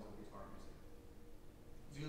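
A man's lecturing voice in a hall: a short spoken fragment about half a second in, then a pause with faint room tone before he speaks again.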